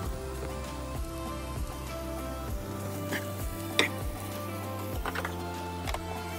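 Background music with a steady beat, over potatoes sizzling in a frying pan. A few sharp knocks of a utensil against the pan, the loudest a little before four seconds in and a quick cluster near the end.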